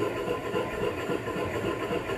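A glass of red wine swirled on a tabletop: the glass's foot rubs round and round on the table in a steady rhythmic rumble. The swirl aerates the wine to open its aromas after it was smelled at rest.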